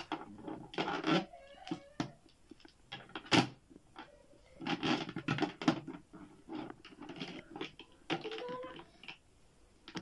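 Plastic wrestling action figures knocking and tapping against a plastic toy stage as they are handled: an irregular run of small clicks and knocks.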